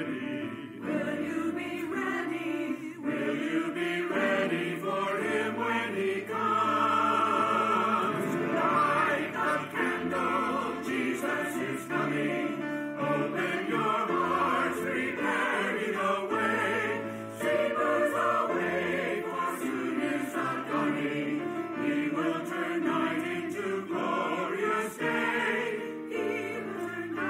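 A church choir singing, with held low notes under many voices.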